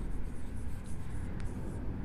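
Chalk writing on a chalkboard: faint short scratching strokes as a word is chalked, over a low steady room hum.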